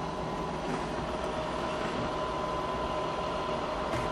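Steady engine hum at idle, heard from the cab of a Morbark waste recycler, with a faint steady whine above it.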